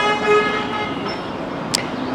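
A car horn sounding one long steady note that fades out about a second in, over a low hiss of street traffic; a short sharp click near the end.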